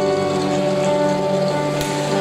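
Live band music with a chord held steady throughout, and one brief click near the end.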